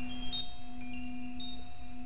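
Chimes ringing under the narration: a few held tones, with a new high chime struck about a third of a second in and another a little past halfway, each left to ring on.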